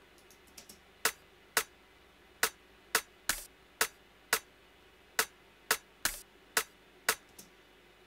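Sampled drum-and-bass drum hits playing back from a computer: about a dozen short, sharp, dry hits in an uneven, syncopated pattern, with little low end.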